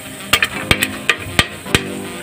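Popcorn kernels popping in a pressure cooker: several sharp pops at irregular intervals.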